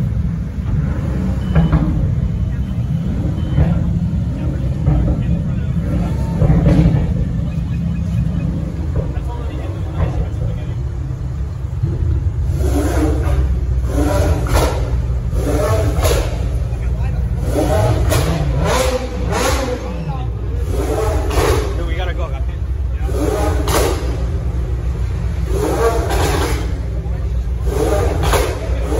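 A sports car's engine running with a low, steady rumble, with a rev that rises and falls away about two-thirds of the way through. Onlookers talk close by in the second half.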